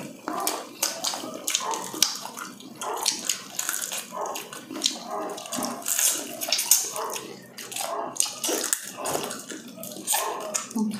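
Close-miked eating of fried chicken by hand: wet chewing, lip-smacking and crunching of the breaded skin, in many small irregular clicks and crackles.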